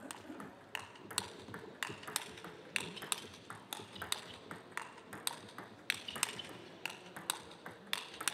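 Table tennis ball ticking back and forth off rubber bats and the table in a rally, a sharp click two or three times a second over a low background murmur.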